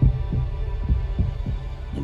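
Film-trailer sound design: a deep, steady bass drone with soft low pulses about three times a second, like a slow heartbeat.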